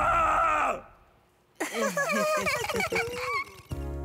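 Cartoon character's wordless voice: a held cry that stops just under a second in, then after a short silence a run of groaning vocal sounds that slide up and down in pitch. Music starts near the end.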